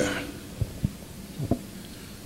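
A few soft, low thumps over a faint steady hum: handling noise from a handheld microphone.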